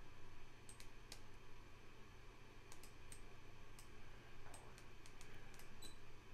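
Faint computer mouse clicks, a dozen or so short ticks at uneven intervals, over a steady low hum.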